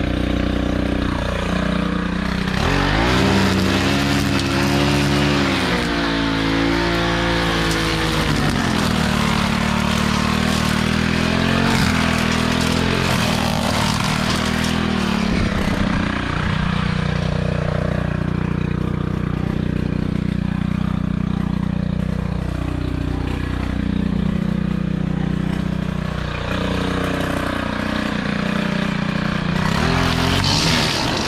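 Gas-powered string trimmer running and cutting grass, its engine speed rising and falling again and again as the throttle is worked.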